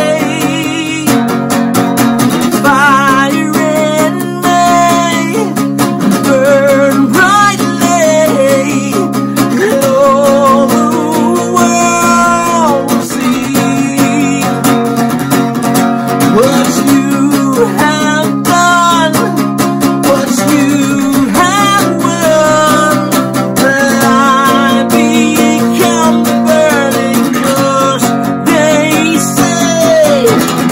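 A man singing with a wavering vibrato while playing an acoustic guitar.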